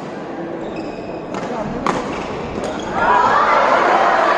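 Badminton rally: a few sharp racket smacks on the shuttlecock, about half a second to a second apart, the strongest near two seconds in. About three seconds in, spectators break into loud cheering and shouting as the point ends.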